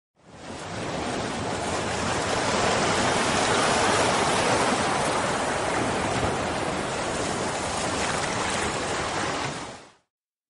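Steady rushing noise with no pitch or rhythm, laid under the animated intro title. It fades in at the start, swells slightly about four seconds in, and fades out just before the end.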